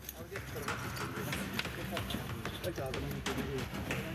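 Rescue workers' voices in the rubble, several people talking over one another in short bursts. Scattered knocks and clatter run through it, over a low steady hum.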